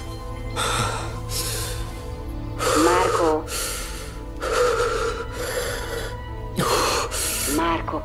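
A man breathing hard in quick, gasping breaths, about one a second, a couple of them catching in his throat, over a low background music score. It is the heavy breathing of a panic attack.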